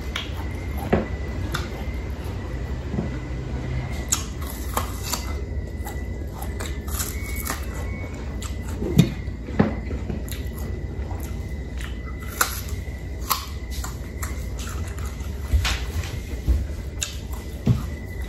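Close-miked eating sounds of a person chewing and biting chunks of Indian mango dipped in shrimp paste, with short wet smacks and clicks scattered irregularly over a steady low hum.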